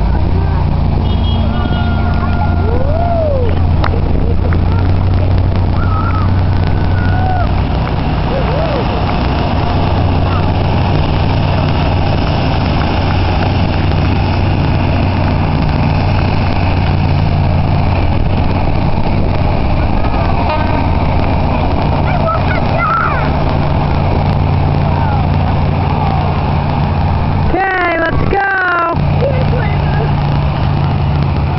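Heavy work vehicles' engines running, a steady low drone that holds through the whole stretch.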